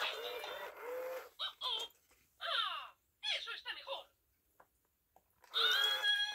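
Spanish-language Mickey Baila y Baila (Dance Star Mickey) plush toy speaking through its small built-in speaker. It talks in several short, thin-sounding phrases, with brief pauses between them.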